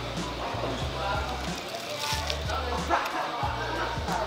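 Background music with a pulsing bass line.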